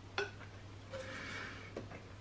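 Faint sounds of a person drinking from a plastic bottle: a short gulp or click just after the start, then a soft breathy sound around the middle, over a low steady hum.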